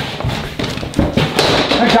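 Dull thumps as a man pushes up from a wooden desk and walks off across a floor, two heavier thuds at the start and about a second in.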